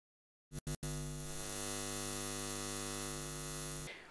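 Electrical neon-sign hum: two or three short crackles as it switches on about half a second in, then a steady buzz that cuts off just before the end.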